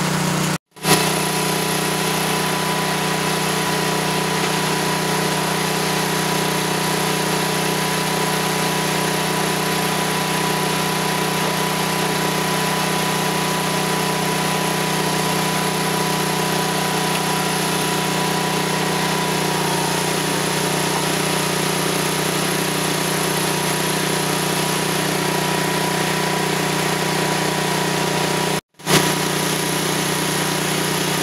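Portable metal-roofing roll forming machine running with a steady hum. The sound drops out for a moment about a second in and again just before the end.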